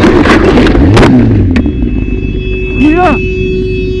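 A car and a motorcycle collide: a loud crash with scraping and sharp cracks of plastic and metal in the first second or so. A steady high tone then holds, and a man shouts once near the end.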